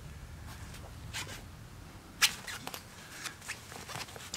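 Small scattered taps and scuffs from a four-week-old Pembroke Welsh Corgi puppy nosing a Christmas ornament ball and padding across the floor. The sharpest tap comes a little past the middle.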